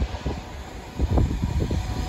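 Gusty wind buffeting the microphone, over the low rumble of an approaching Class 390 Pendolino electric train. The noise swells about a second in.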